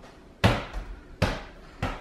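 Three dull thumps from a self-balancing hoverboard as bare feet step onto it and its footpads tip and knock under the shifting weight, the first the loudest.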